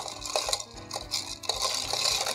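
Bar spoon stirring a cocktail in a glass, with light scattered clinks against the glass, over background music.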